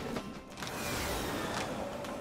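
Background music with the mechanical running sound of cartoon locomotives rolling along the track.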